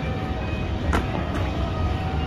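Outdoor background noise: a steady low rumble with faint music, and a single sharp click about a second in.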